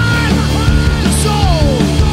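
Rock music: a full band playing with a lead vocal singing over it.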